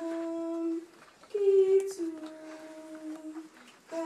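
A woman singing a slow hymn in long, steady held notes. She pauses briefly about a second in and again just before the end.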